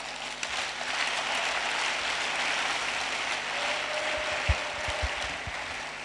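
Congregation applauding, swelling in the first second and slowly dying away.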